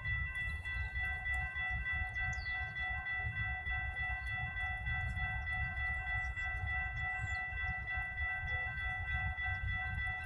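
Railroad grade-crossing warning bell ringing steadily, with a slight regular pulse, as the crossing signals activate for an approaching train. A low rumble runs underneath.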